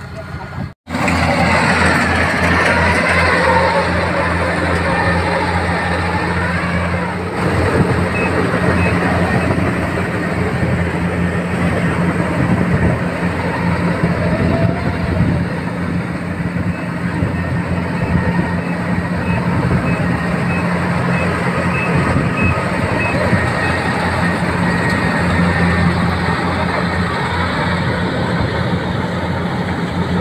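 Rice combine harvester's diesel engine running steadily close by, a continuous low hum, with people's voices over it, most clearly in the first several seconds.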